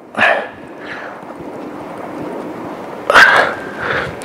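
A man breathing out hard with effort while doing press-ups: a sharp breath just after the start, a weaker one about a second in, and a louder, strained one about three seconds in.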